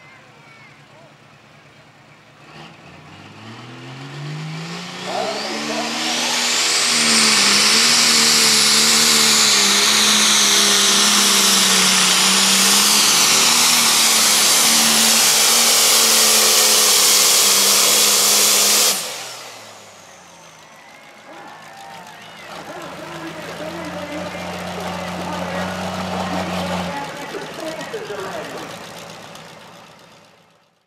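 Modified John Deere super stock pulling tractor's engine revving up, then running flat out under the load of a weight-transfer sled for about thirteen seconds, with a high whine over it. It cuts off suddenly, and a quieter, lower engine runs steadily near the end.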